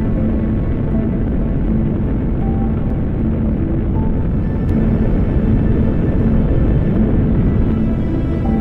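Saturn V first-stage F-1 rocket engines firing: a loud, steady, deep rumble, with faint music underneath.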